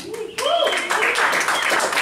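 Audience clapping and cheering. It starts about half a second in, with voices calling out over the applause.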